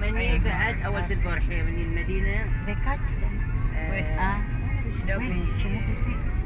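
Steady low rumble of a car driving, heard from inside the cabin, with a voice singing over it.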